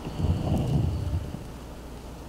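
Wind buffeting the camera microphone: an irregular low rumble, strongest in the first second or so and then easing off.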